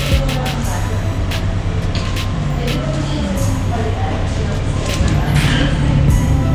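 Background music with a steady bass line, with indistinct voices under it.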